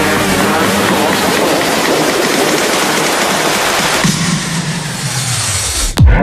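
A loud rushing transition sound effect that sinks in pitch over its last two seconds, falling between two pieces of electronic music; a beat starts at the very end.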